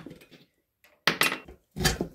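Metallic clinks from a dirt-bike rim lock being worked loose from a spoked wheel after its nut is taken off: two sharp clinks, about a second in and near the end.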